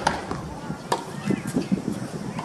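Tennis ball impacts on a hard court during practice: a sharp pop right at the start and another just before a second in, then a few softer knocks in the second half.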